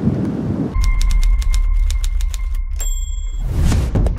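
Electronic outro sound design for an end screen: a heavy deep bass boom with steady high beeps and quick digital clicks, building into a rising whoosh near the end. It is preceded for under a second by outdoor wind noise on the microphone.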